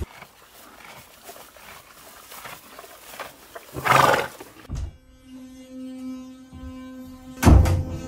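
Soft ambient music with long held tones begins about five seconds in, under a 'Day 4' title, and a short, loud transition sound effect hits near the end as a sparkle graphic appears. Before the music there is a quiet stretch broken by one loud burst of sound about four seconds in.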